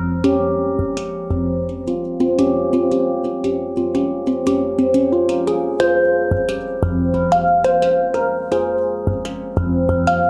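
Small Leaf Sound Sculptures handpan with an F2 centre note, played by hand in a free improvisation. Quick fingertip strikes on the tone fields ring over one another, and the deep F2 centre note sounds several times under them.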